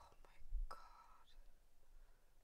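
A woman's soft, breathy whisper lasting under a second, starting about half a second in, with a brief low bump at its onset.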